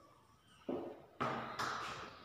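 Two sharp taps about half a second apart, each trailing off, from a marker striking a whiteboard as a word is written on it.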